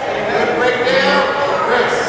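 Spectators and coaches shouting and calling out in a gymnasium, with a long held shout about halfway through.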